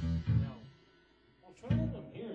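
A band playing amplified electric guitar with drums cuts off about half a second in, leaves a gap of about a second, then comes back in together on a sharp hit.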